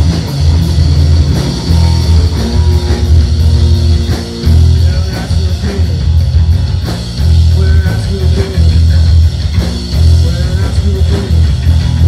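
A live rock band playing: electric guitar, bass guitar and drum kit together, loud, with heavy bass notes and steady drum hits.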